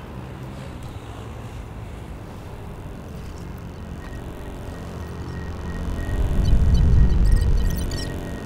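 Animated-film soundtrack: a low ambient drone with faint steady tones, swelling into a loud deep rumble about six to seven seconds in, then easing off, with a few faint high glints near the end.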